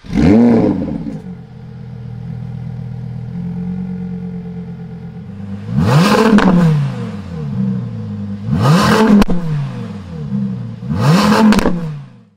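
Audi R8's 5.2-litre V10 starting with a loud rev flare that settles into a steady idle. It is then blipped three times, each rev rising and falling back to idle, with a single sharp crack during the second rev.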